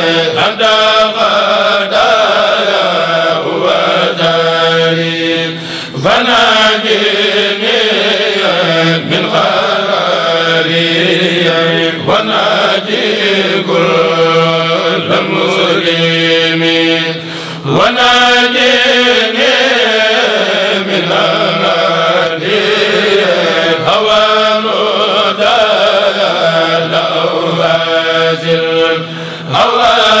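A Mouride kourel, a group of men, chanting Arabic religious poems (xassaids) together through microphones, in long melodic phrases with a few short breaks between them.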